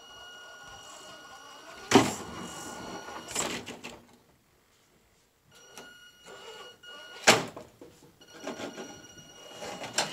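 Small electric RC rock crawler running over stone, its motor and drivetrain whining with a thin steady high tone. The motor stops for about a second and a half midway, then resumes. Two sharp knocks, about two seconds in and again past seven seconds, are the truck's tyres and chassis striking the rock.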